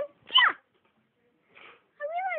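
One short, high-pitched, meow-like cry that slides steeply down in pitch, followed by a faint soft rustle near the end.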